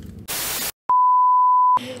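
Edited-in sound effects: a short burst of static hiss, a moment of dead silence, then a click and a steady, high-pitched pure beep lasting under a second, like a censor bleep.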